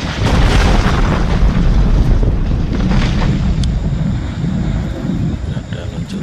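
Loud, continuous deep rumbling of rockfall and a pyroclastic flow (awan panas guguran) pouring down the flank of Mount Merapi.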